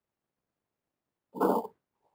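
Silence, then about a second and a half in, a single short non-speech vocal sound from a person, under half a second long.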